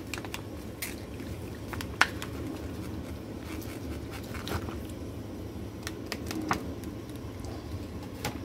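Saucepan of water at a boil, bubbling steadily, with a few sharp clicks and splashes as hearts-of-palm noodles are tipped in from their package.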